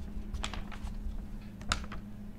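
Sheets of paper being handled: a few light, scattered crackles and taps, the loudest near the end, over a steady low hum.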